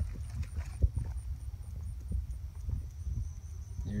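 Footsteps through dry grass and brush, with scattered soft knocks, over a steady low rumble on the microphone.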